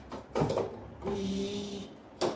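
Toy blender's small battery motor buzzing for just under a second, with a burst of plastic clicking and clattering shortly before it.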